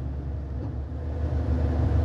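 Steady low rumble of a car heard from inside the cabin, growing slightly louder toward the end.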